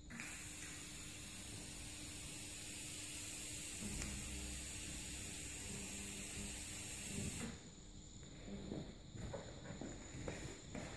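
TIG (argon) welding torch giving a steady hiss that starts abruptly and cuts off suddenly about seven and a half seconds in. After it come scattered knocks and handling sounds.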